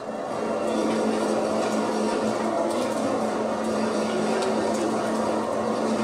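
G.Paniz spiral dough mixer running on its slow speed, kneading bread dough: a steady machine hum with one held low note.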